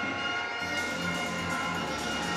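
Background music of sustained chords, with a low pulsing bass note that comes in about half a second in.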